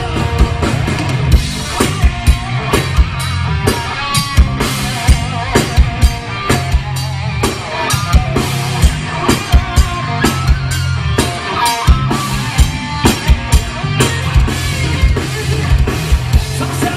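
Live rock band playing: electric guitars over a drum kit with a steady beat of kick and snare.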